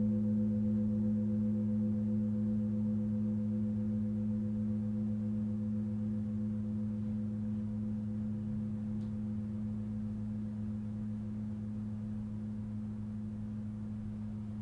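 Tibetan singing bowls ringing on in a low, steady hum that fades slowly, with no new strike. The higher tones waver and die away first, leaving the deepest notes.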